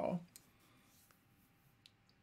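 Near silence in a pause of a man's narration, broken by a few faint, short clicks; the last syllable of his voice fades out just as it begins.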